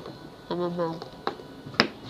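Three sharp clicks of hard stones and a metal magnet knocking together as they are handled, the loudest near the end, with a short spoken sound about half a second in.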